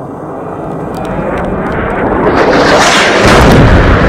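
Airstrike explosion. A rushing noise swells for about three seconds, then breaks into a loud, heavy blast with deep rumble near the end.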